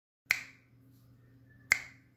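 Two finger snaps about a second and a half apart, marking a slow beat, over a faint low hum.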